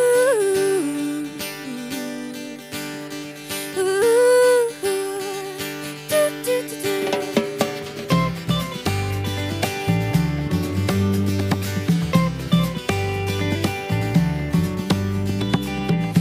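Intro of an acoustic folk-pop song: acoustic guitar strumming under a wordless, gliding vocal line. Bass and drums come in about halfway through.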